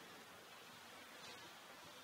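Near silence: faint, even room hiss.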